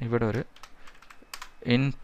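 Typing on a computer keyboard: a quick run of key clicks lasting about a second.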